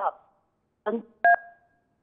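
A short two-tone telephone beep, like a keypad (DTMF) tone, on a phone line, starting with a click a little past the middle and fading out quickly.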